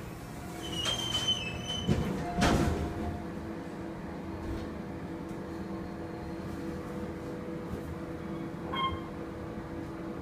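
Otis elevator doors sliding shut, with knocks and a bump about two seconds in, then the car travelling upward with a steady motor hum. A single short beep sounds near the end as it nears the next floor.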